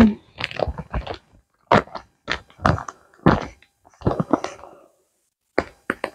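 Plastic wax melt clamshell packaging being handled: a scattered series of short clicks and taps with quiet gaps between them.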